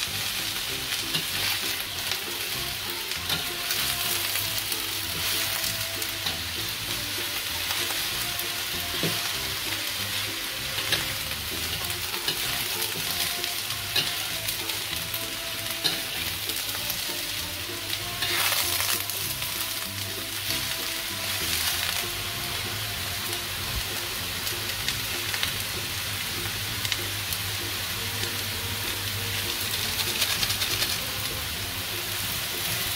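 Julienned chayote and carrot sizzling as they are stir-fried in a wok, with a metal spatula scraping and tapping against the pan in short clicks.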